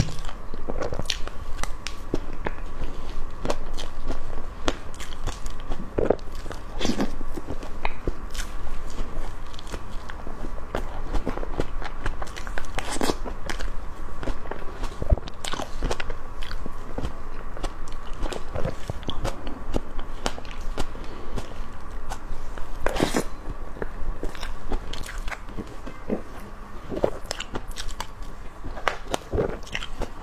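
Close-miked eating sounds: biting and chewing spoonfuls of a whipped-cream sponge cake topped with green grapes, with wet mouth clicks at irregular intervals.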